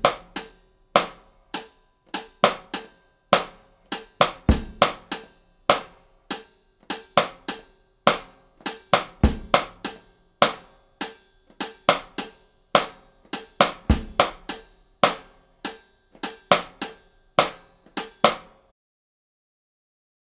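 Drum kit played at a slow, steady tempo: eighth-note hi-hat with bass drum and snare syncopations, the snare falling on the second sixteenth of beats 1 and 3 and the fourth sixteenth of beat 4. A heavier low stroke opens each of four bars, and the playing stops shortly before the end.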